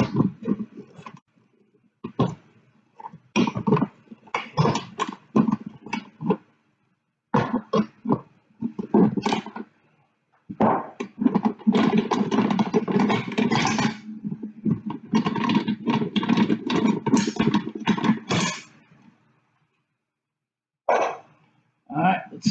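Metal clanking and scraping from the wing-nut clamps on the lid of a Harbor Freight resin-casting pressure pot as they are loosened with a wrench and swung free. The sound comes in irregular bursts with short pauses, busiest in the middle.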